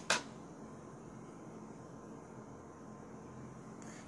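Low steady room hiss with one short, sharp click right at the start.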